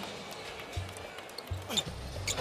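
Game-floor sound of a basketball arena picked up on a player's body microphone: a low, even background hum with two dull low thumps, about a second in and again near the end.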